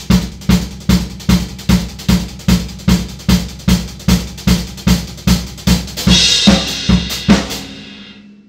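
Maple drum kit playing a disco groove at about 142 beats per minute, the bass drum four on the floor. Cymbal wash swells in about six seconds in, then the kit stops and rings out near the end.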